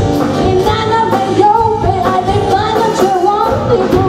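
A woman singing a pop song into a microphone with a live rock band, the drum kit and cymbals keeping a steady beat under her voice.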